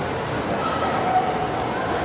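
Children's voices and crowd hubbub, with a short high-pitched cry from a child about a second in.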